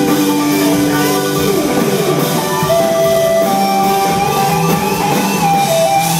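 Live rock band playing electric guitars and drum kit, with a lead line of held notes that slide in pitch.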